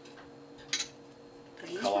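A single sharp metallic clink about a second in, from a stainless-steel cocktail shaker being handled as its parts are pressed together, before any shaking starts.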